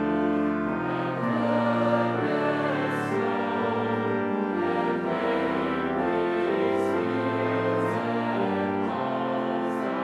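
A large congregation singing a hymn together with instrumental accompaniment, in slow held notes that change about every second.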